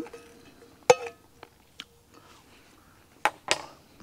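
Cutlery clinking against a small ceramic-coated camping frying pan while eating from it: one ringing clink about a second in, a light tick, then two sharp clicks near the end.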